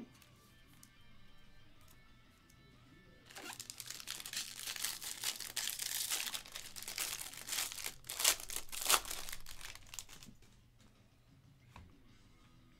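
Silver foil trading-card pack wrapper crinkling and tearing as it is ripped open and peeled off the stack of cards, starting a few seconds in and lasting about seven seconds, loudest shortly before it stops.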